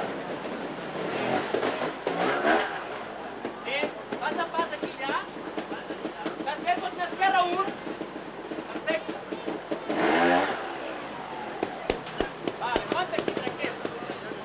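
Montesa trials motorcycle engine blipping, with revs rising sharply twice, about two and a half seconds in and again, loudest, about ten seconds in. People's voices talk and call over it.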